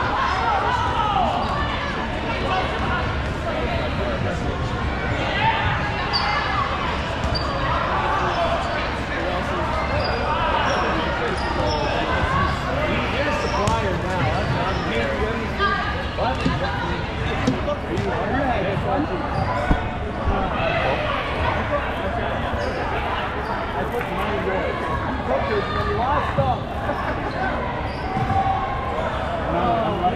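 Dodgeballs bouncing and smacking off the gym floor, walls and players, with a few sharper hits standing out, over constant calling and chatter from many players across the courts.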